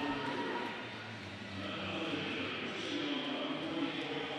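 Steady background hubbub of a large swimming-pool crowd, with faint indistinct voices.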